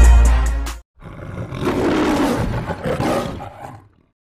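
Music with a heavy bass beat cuts off abruptly under a second in. After a short gap, a lion roars for about three seconds, the roar of a film-studio lion logo, and fades out.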